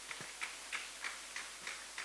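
Faint, regular ticking, about three ticks a second.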